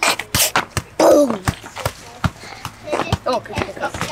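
A football being kicked and bouncing on tarmac: a series of short, sharp thuds at uneven intervals, with brief bits of voices.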